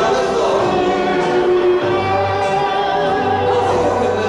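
Live rock band music on stage, with long sustained chords held steady. A low bass note comes in about two seconds in.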